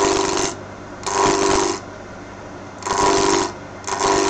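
A 3/8-inch bowl gouge cutting a spinning chestnut blank on a wood lathe, roughing it down. There are four short bursts of cutting noise, each about half a second, as the gouge goes into the wood, over the lathe's steady running.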